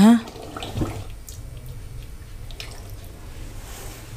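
Quiet kitchen handling sounds over a low steady hum: a soft knock about a second in, then a few faint clicks of a metal spatula against an aluminium cooking pot.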